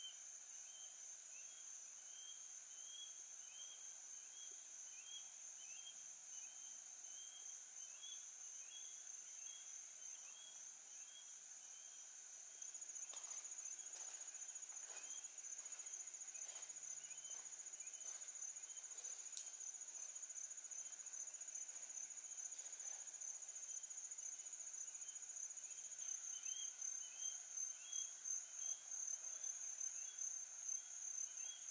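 Insect chorus: a steady high-pitched drone with a repeating chirp under it. It steps louder about halfway through and pulses rhythmically near the end.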